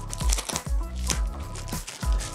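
Clear plastic cling wrap crinkling as it is torn open by its pull tab and peeled off a cardboard box, over background music with a steady beat.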